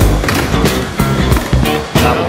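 Skateboard sounds, with the board on a skatepark box ledge and the wheels rolling on concrete, mixed with a loud music track.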